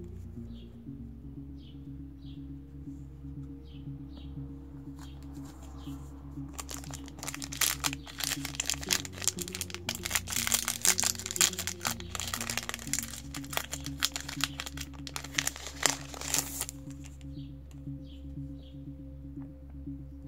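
A Yu-Gi-Oh! foil booster pack wrapper crinkling and tearing as it is opened by hand, a dense crackle for about ten seconds from around six seconds in, over steady background music.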